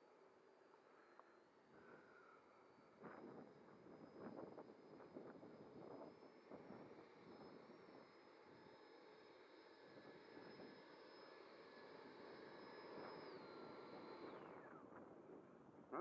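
Faint high whine of the FMS Rafale's 80mm electric ducted fan running at low throttle, holding a steady pitch, then spooling down with a quickly falling pitch about three-quarters of the way through.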